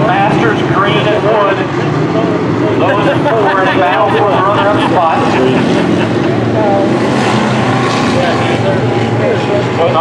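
Several dirt-track stock car engines running on the oval as a steady loud drone, with voices mixed in over it.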